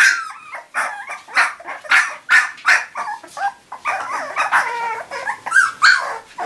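A litter of Shar-Pei puppies yipping and whimpering: many short, high calls in quick succession, some sliding up and down in pitch.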